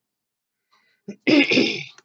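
A man clearing his throat once, a short rough burst about a second in.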